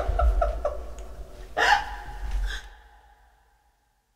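Short, falling vocal blips and breathy sounds from the singers' voices over a low hum, then a louder vocal burst about a second and a half in; the sound fades out to nothing about three seconds in.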